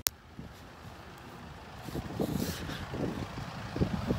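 A short click at the very start, then wind buffeting the microphone outdoors as a low, irregular rumble that gusts more strongly from about halfway in.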